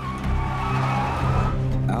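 Pickup truck's tires squealing as it skids sideways across the road, a single screech that rises slightly in pitch for about a second and a half, over a steady music bed.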